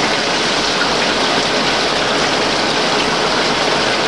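Six-spindle Cone automatic lathe running under load, a heavy flood of cutting oil pouring and splashing over the tooling and work in a steady, rain-like rush with the machining noise underneath.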